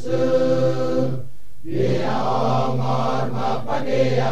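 Male choir singing long held chords, breaking off briefly a little over a second in before the voices come back in.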